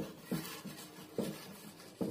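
Kitchen knife cutting through a peeled raw potato on a ceramic plate: a few short, quiet scraping cuts.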